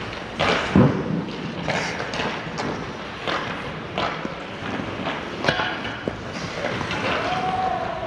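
Hockey pucks and sticks knocking against the ice and boards in a large indoor rink: a string of sharp knocks and thuds at uneven intervals, the loudest about a second in.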